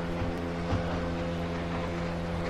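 A boat engine running at a steady speed: one even, unchanging drone.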